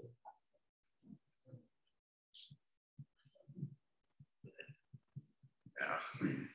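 Faint voices in a lecture room after a joke: scattered soft chuckles and murmurs, short low pulses a few times a second, with a louder burst of voice near the end.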